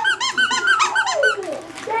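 A squeaky dog toy squeezed over and over, giving a quick run of high squeaks, about five a second, that stops about a second and a half in.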